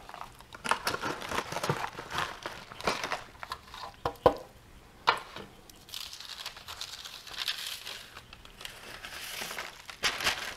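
Foil Mylar pouch and parchment paper crinkling as pieces of freeze-dried pulled pork are slid into the pouch by hand and the parchment liner is lifted off the tray, with a couple of sharper clicks about four and five seconds in.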